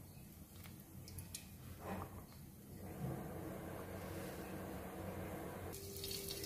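Oil heating in an unglazed clay pot: a faint, low hiss that grows a little stronger about halfway through as small bubbles start to form, with a few light ticks early on.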